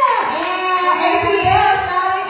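Women singing R&B vocals into handheld microphones over a backing track with a steady beat.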